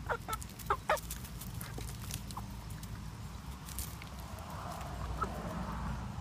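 Domestic hens clucking, a cluster of short calls in the first second, followed by scattered faint ticks.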